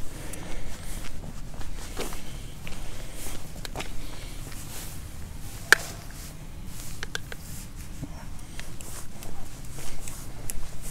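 Footsteps walking over wet grass and paving, irregular and unhurried, with one sharp click just past halfway.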